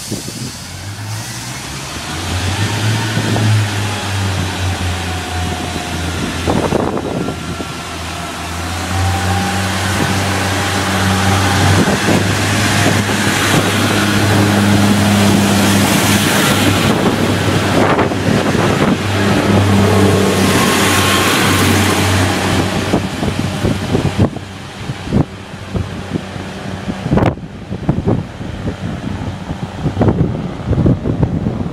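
Diesel train's engine running and revving, its note stepping up and down for about twenty seconds as it moves along the platform, then fading. Near the end the engine gives way to a few knocks and wind on the microphone.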